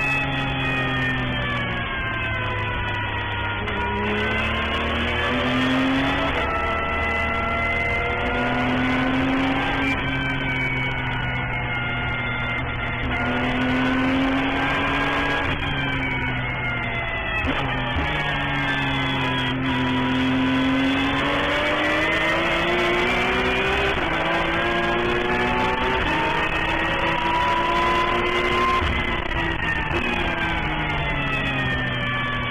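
Racing car engine under load, its pitch climbing for a few seconds at a time and falling back, over and over, with a few sudden steps where gears change.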